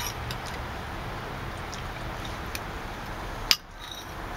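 Steady outdoor background noise with a few light clicks of a metal spoon against a bowl. A sharper click comes near the end, and the background then drops out for a moment.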